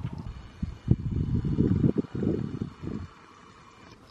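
Wind buffeting the microphone: a gusty low rumble that starts about a second in and dies down about three seconds in.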